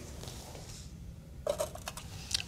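Ceramic ramekins being set down in a metal roasting tray: a quick cluster of light clinks about one and a half seconds in.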